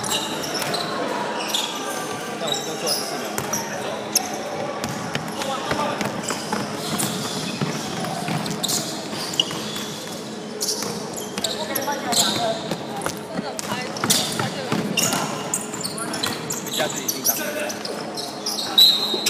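Basketball game play in a large sports hall: the ball bouncing on the court, brief high squeaks and indistinct players' voices calling out, all with hall echo.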